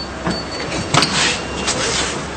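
Steady background noise with faint shuffling and clicks, and a single sharp knock about a second in.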